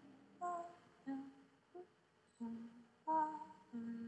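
A voice humming a slow unaccompanied tune: a series of separate notes, some sliding up in pitch, getting longer and louder towards the end.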